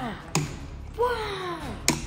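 A child's voice gives a long wordless call that slides down in pitch, with two short sharp knocks of a plastic toy pirate ship on a table, one about a third of a second in and one near the end.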